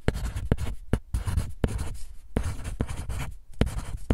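Pencil writing on paper: a quick, uneven run of short strokes, several a second.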